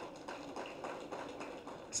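A pause in a man's speech at a podium microphone: only faint room noise of the hall, with a few soft ticks.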